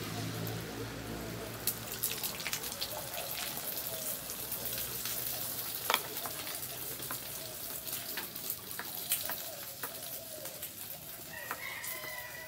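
Beaten egg sizzling in hot oil in a frying pan, with scattered crackling pops. Chickens cluck in the background, and a rooster crows near the end.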